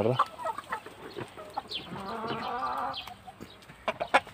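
A flock of domestic chickens clucking, with many short calls scattered throughout and one longer drawn-out call from about two seconds in to about three.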